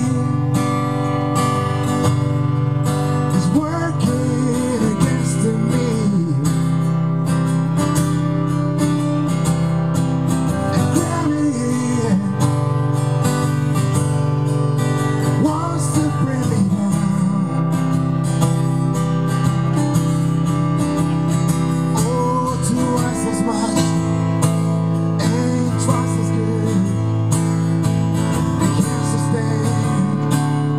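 Acoustic guitar strummed in a steady rhythm, chords ringing continuously.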